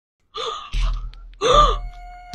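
A woman's short gasping cries of distress, each rising and falling in pitch, the loudest about one and a half seconds in.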